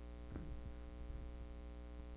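Steady low electrical mains hum with a faint hiss from the sound system, with a few faint soft bumps in the first second.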